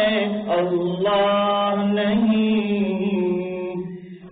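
A single voice chanting devotional verse (kalam) in long held, slowly gliding notes, the phrase fading out near the end.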